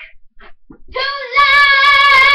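A child singing one long, high, held note that starts about a second in, after a brief quiet gap.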